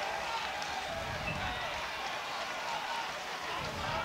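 Football stadium crowd: a steady murmur of many distant voices, with faint calls rising out of it.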